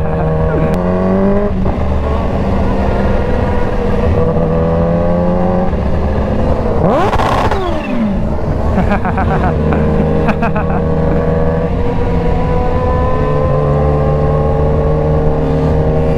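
Kawasaki Ninja H2's supercharged inline-four engine running under the rider at a steady city cruising pace, its pitch holding level for long stretches and shifting with throttle and gear changes. About seven seconds in, pitches briefly sweep up and down before the steady engine note returns.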